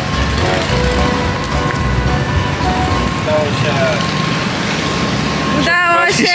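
Low engine rumble of a stopped city bus, heard at its open door as passengers step off; it cuts off abruptly near the end.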